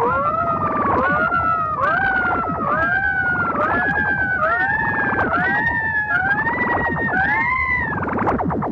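Siren-like wailing sound effect on the film soundtrack, about ten rising wails, each one a little higher than the last, over a fast buzzing pulse.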